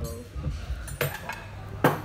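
Ceramic plates clinking as they are set down on a table: two sharp clinks, one about a second in and a louder one near the end.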